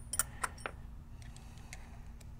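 Hex keys and metal paintball marker parts being handled: three light metallic clicks close together in the first second, then a few fainter ticks.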